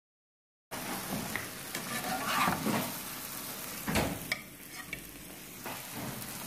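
Egg omelettes frying in oil in a pan, sizzling steadily, with several sharp knocks and scrapes of a utensil against the pan. The sound cuts in abruptly under a second in.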